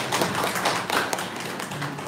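A small group of people clapping briefly, with quick irregular claps that thin out and die away in the second half.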